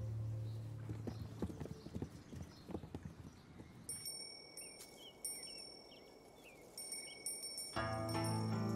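Birds chirping briefly over a high steady ringing, after a few scattered sharp knocks. Near the end a guqin starts to be plucked.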